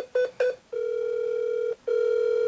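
Telephone line tones heard through a phone's speaker: three short beeps, then two long steady tones of about a second each with a brief break between them. This is the line ringing while the call is being transferred.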